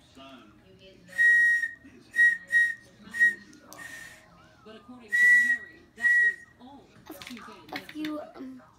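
A child's plastic toy whistle blown in a run of short blasts on one steady high pitch, with breath noise. Two of the blasts are held longer, about a second in and again about five seconds in.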